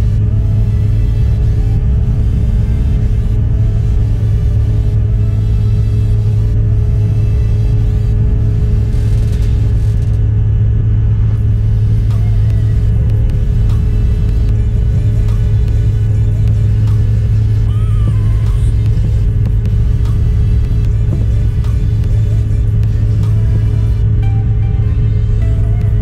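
Steady, loud low drone of a jet airliner's cabin and engine noise in flight, with music playing over it.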